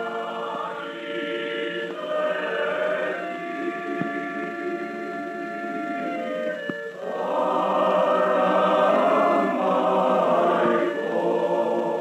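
Choral music from the soundtrack of an early Macedonian feature film: a choir singing long held chords, swelling fuller and louder about seven seconds in.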